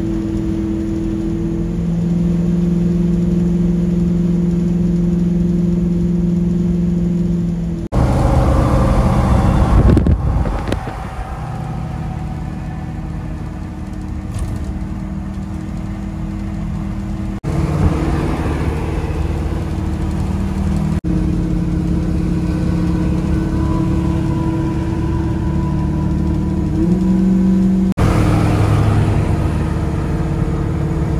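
Old Chevrolet C10 pickup cruising at highway speed, heard from inside the cab: a steady engine drone over tyre and wind noise. The drone shifts abruptly several times, with a louder rush of noise for about two seconds some eight seconds in.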